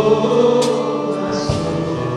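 Live worship band playing a gospel-style song, voices singing over sustained chords, with a few drum and cymbal strikes.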